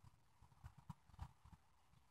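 Near silence, with about half a dozen faint, irregular taps.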